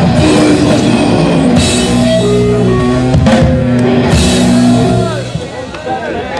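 Crust punk band playing loud and live, with distorted guitar and bass chords over drums and cymbals. The song stops about five seconds in, leaving crowd chatter.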